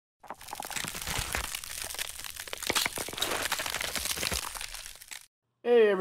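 Dense crackling and crunching noise, full of small clicks, for about five seconds; it cuts off suddenly. A man starts talking just before the end.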